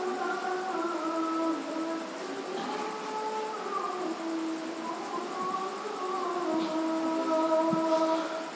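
The Islamic call to prayer (azan), sung by a male voice in long held notes that glide slowly from one pitch to another.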